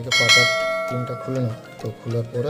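A bell-chime notification sound effect rings once just after the start and fades away over about a second and a half, over background music.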